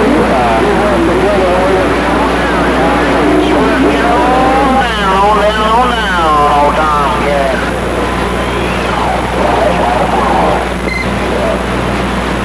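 Garbled, distant voices coming in over a CB radio on skip, with a steady hum and static under them. Around the middle the sound swings widely up and down in pitch.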